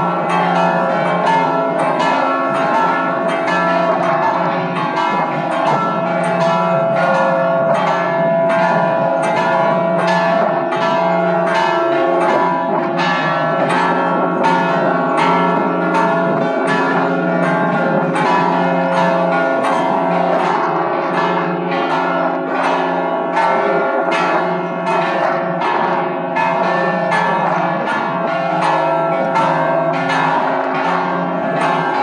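Five church bells rung together in a full peal, their strikes following one another steadily about twice a second over the continuous hum of the bells. The peal includes a large 1761 Bouchet bell, with the bells tuned to F#, E, C#, C and C#.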